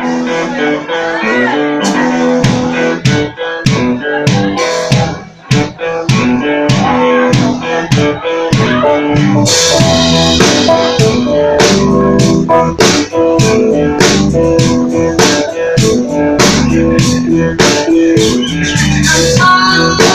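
Live blues-rock band kicking in together at full volume: drum kit with a steady beat, electric guitar and bass guitar playing.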